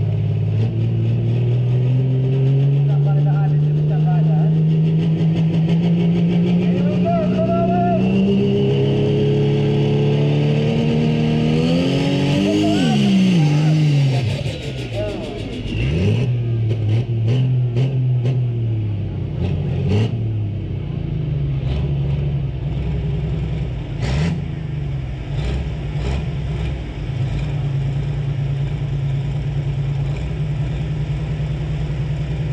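Prostock pulling tractor's turbocharged diesel engine revving, its pitch climbing steadily for about twelve seconds, then swooping and dropping away. It wavers up and down among scattered sharp clicks before settling into a steady low run near the end.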